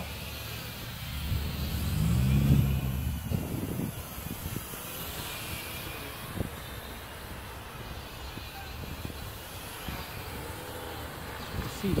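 A road vehicle passes about two seconds in, a low engine hum that rises and falls in pitch. Behind it runs the faint wavering whine of a small toy quadcopter's geared motors, with wind on the microphone.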